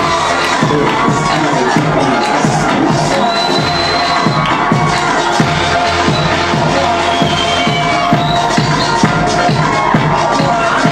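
Electronic dance remix played loud over a club sound system, with a steady thumping beat and bass that comes in right at the start. A crowd cheers over it.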